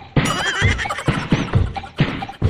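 Upbeat dance music with a steady beat, and a high, wavering, whinny-like call over it about half a second in.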